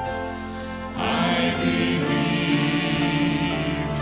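Church choir singing a slow gospel hymn to music, holding long notes; a fuller, louder chord comes in about a second in.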